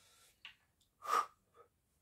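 A man sniffing a freshly opened bottle of hot sauce: one short, sharp sniff through the nose about a second in, with fainter breaths around it.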